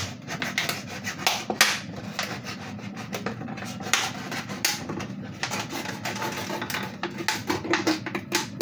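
A plastic bottle being cut through by hand to take off its neck: an uneven run of crackling and scraping as the blade works through the thin plastic.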